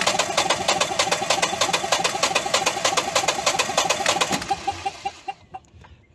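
Generac standby generator's natural-gas engine being turned over by its starter in rapid, even strokes without catching, then stopping about four and a half seconds in. It is a crank-but-no-start: the engine cranks and has spark but won't fire.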